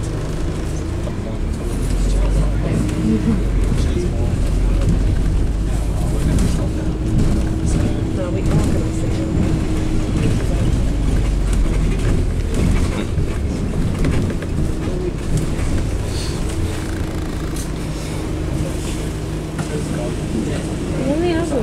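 Bus engine and road rumble heard from inside a moving bus, growing louder about two seconds in, with a steady whine over the rumble in two stretches.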